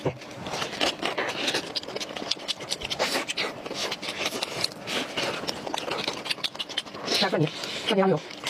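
Close-miked eating of large meat-filled steamed buns: soft dough being torn apart and bitten, then chewed with many small mouth clicks. A short voiced sound comes near the end.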